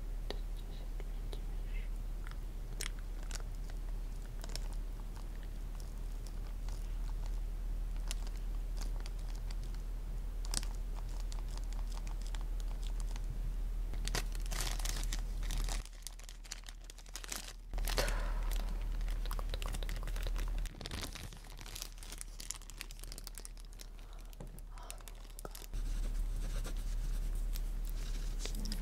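A small clear plastic zip bag crinkling and rustling close to the microphone, in bursts a little past the middle with the loudest just after that. Before that there are only scattered soft clicks and taps.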